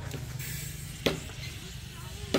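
Aluminium beer cans being handled and opened: a short hiss, then a single sharp metallic click about a second in, against a low steady rumble. The cans are full, so the hiss is the escaping gas.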